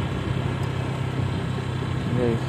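A vehicle engine running steadily as a low, even hum.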